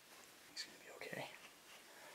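A soft, whispered word or two from a person's voice about half a second in, over quiet room tone.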